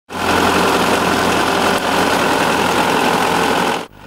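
Tractor engine running steadily while its boom-mounted mower cuts through weeds; the sound cuts off suddenly near the end.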